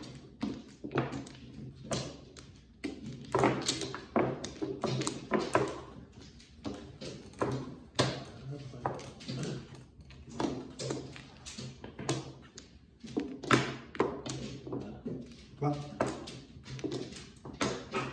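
Mahjong tiles clacking: irregular sharp clicks and knocks as tiles are set down on the table mat and knocked against one another while players draw, discard and arrange their hands.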